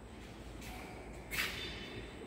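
Quiet background with one brief scrape about one and a half seconds in.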